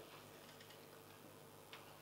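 Near silence: room tone with a faint steady hum, in a pause between spoken phrases.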